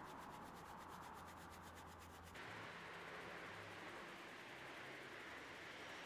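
Faint scrubbing of a bristle detailing brush working cleaner into the rubber window guide channel of a BMW X5 (E53) door.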